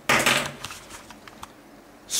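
Handling noise: a short, loud rustle at the start, followed by a few faint small clicks.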